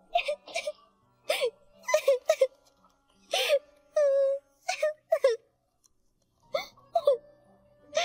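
A young girl crying: broken sobs with gasping breaths in short bursts, one longer held cry about four seconds in, and a short lull near six seconds.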